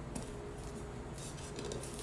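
Quiet handling sounds: an adhesive stencil sheet being handled and laid onto a chalkboard, with faint rubbing and rustling, strongest a little past the middle, over low room noise.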